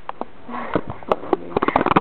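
Close to the microphone, a person sniffs and makes a run of sharp little clicks from the mouth or from handling, with a brief low hum about halfway through. The clicks come quickly near the end.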